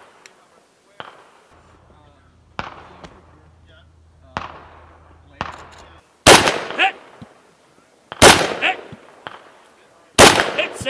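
Rifle shots fired one at a time, a second or two apart, each followed by a short echoing tail. The two shots near the end are much louder than the earlier ones.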